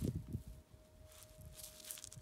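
Gloved hand handling a rock: a few soft knocks and rustles at the start, then faint scuffing. A faint steady tone sounds throughout.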